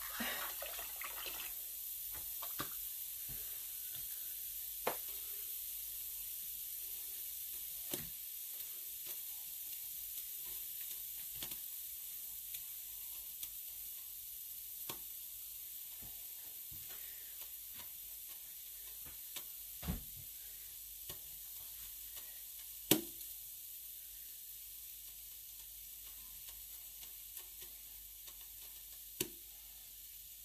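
Dye bath in a large pot giving a faint, steady fizzing hiss that slowly dies down, with scattered small pops and clicks; the sharpest click comes about three quarters of the way through.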